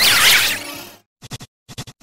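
Heavily distorted, glitch-edited sound effect with loud sweeping pitch glides that fades out about a second in. It is followed by short stuttering pulses in groups of three, repeating about twice a second.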